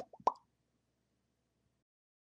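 A quick run of short cartoon pop sound effects at the very start, the last one a rising 'bloop', followed by near silence.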